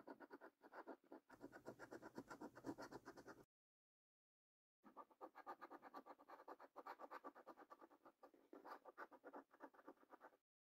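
Faint, quick scraping strokes, several a second, of a coin rubbing the latex coating off a paper scratch card. The scraping cuts out completely for over a second partway through, then carries on.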